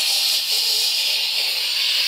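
A woman's long, steady hissing 'shhh' made with her mouth, imitating an Instant Pot's pressure-release valve spraying steam.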